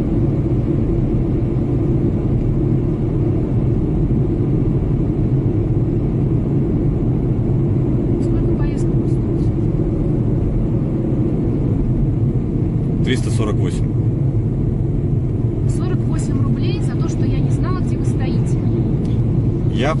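Steady low rumble of a car's engine and tyres heard inside the cabin while driving, with faint voices around 13 seconds in and again near the end.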